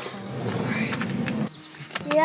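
A van's sliding side door being unlatched and rolled open: a rumbling slide with a few clicks that stops about a second and a half in. Over it a small songbird gives a quick run of high chirps.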